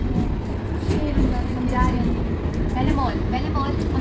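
Steady low running rumble of a moving tram, heard from inside the passenger cabin, with soft voices over it.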